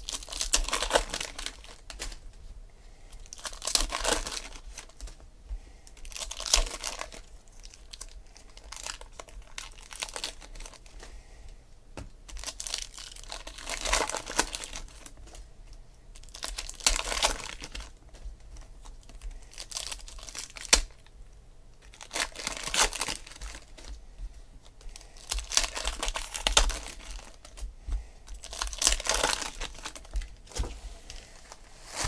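Foil wrappers of Donruss Optic football card packs being torn open and crinkled, one pack after another, in short crackling bursts every two to three seconds.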